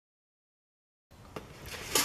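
Complete silence for about a second, then faint room noise with a single sharp click and a growing rustle of hands handling a silicone mold tray on a baking sheet.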